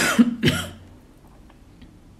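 A woman clearing her throat with two short coughs about half a second apart.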